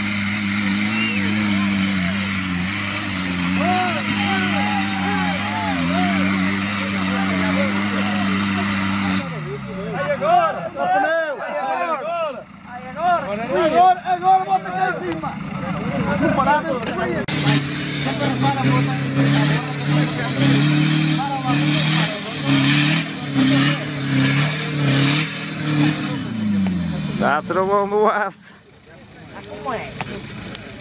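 Engine of a modified Jeep off-roader working hard up a steep rocky climb, held at a steady note at first, then revved in repeated surges later on, with knocks from the tyres and chassis on rock. People shout over it; in the middle the voices stand out as the engine drops back.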